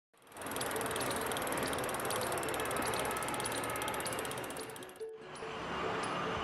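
Mountain bike rear freehub ratcheting as the rear wheel spins freely past the stationary cassette, a rapid, steady run of pawl clicks. It cuts off suddenly about five seconds in.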